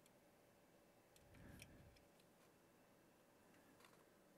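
Near silence: room tone with a few faint ticks and a soft low rustle about a second and a half in.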